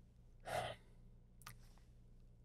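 A man's short breath between sentences, about half a second in, followed by a faint click near the end.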